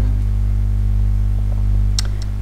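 A steady low hum with no change in pitch or level, sitting deep in the bass with faint higher overtones above it.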